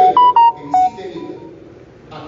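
A quick run of short electronic beeps at a few different pitches: four loud tones within the first second, then two fainter ones, like a phone's keypad or notification tones.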